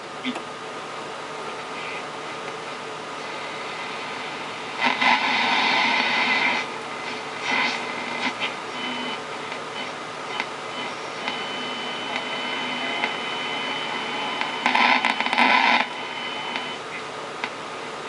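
Murphy TA154 five-valve AM/shortwave radio being tuned between stations: steady static hiss from the loudspeaker. There are two brief louder bursts of noise, about five and fifteen seconds in, and a thin steady high whistle through the second half.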